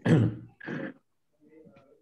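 A person clearing their throat, heard through a video call: two short bursts in the first second, the first the louder.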